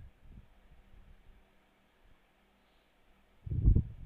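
Quiet room tone with a faint hiss, broken about three and a half seconds in by a brief low-pitched sound.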